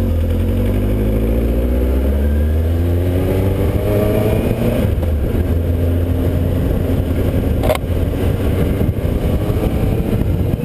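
Motorcycle engine heard from the rider's own bike, accelerating: its pitch climbs for a few seconds, drops at a gear change about halfway through, then it pulls on steadily. Heavy wind rumble on the microphone throughout, and a single sharp click near the end.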